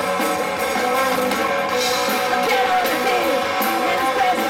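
Live rock band playing loud through a stage PA: electric guitar, electric bass and a drum kit.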